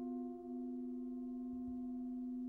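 A metal percussion instrument rings on in a long, steady, bell-like tone with a few overtones. Its slow pulsing dies away about half a second in.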